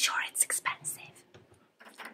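A woman whispering for about a second, then only faint room tone.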